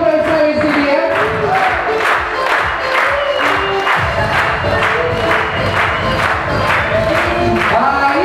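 A crowd clapping steadily in rhythm along with a song with singing.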